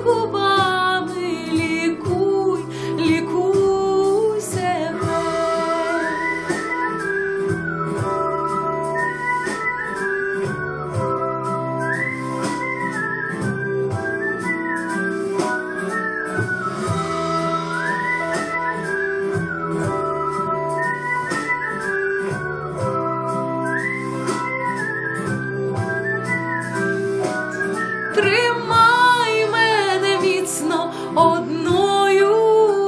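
Instrumental break of a pop backing track: a melodic lead line repeats its rising and falling figure over steady accompaniment and a beat. A female singing voice trails off in the first second and comes back in near the end.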